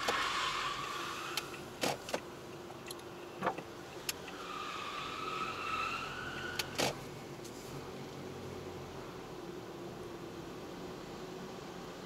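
Car driving slowly through a multi-storey car park, its tyres squealing on the smooth coated floor while turning: one squeal at the start and another a few seconds later, each about two seconds long. A few sharp clicks or knocks come in between, over steady road and engine noise in the car.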